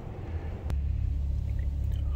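Low steady rumble, with a single sharp click about two thirds of a second in, after which the rumble grows louder.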